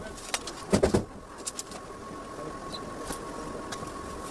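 Hands rummaging through cables and odds and ends in a plastic crate: a short clatter about a second in, then a few light clicks. A thin steady high tone runs underneath.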